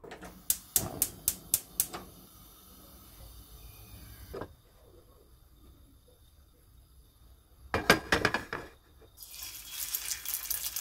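Kitchen sounds at a gas hob and a non-stick frying pan: a quick run of about six sharp clicks early on, a faint hiss, then a cluster of clinks and knocks about eight seconds in. Near the end a hiss rises as the oil in the hot pan begins to sizzle.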